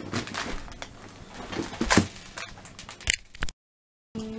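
Handling noises from Lego parts and packaging on a wooden table: scattered knocks and clicks, the loudest a sharp knock about two seconds in. The sound cuts out abruptly in the last half second.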